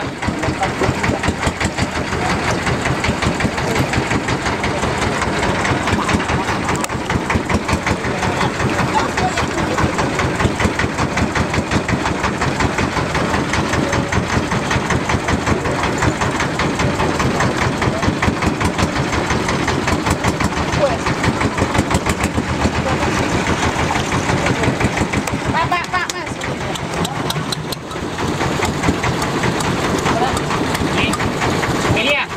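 Engine of a klotok, a motorised wooden river boat, running with a fast, even chugging, the sound the boat is named after. It goes briefly quieter about two seconds before the end.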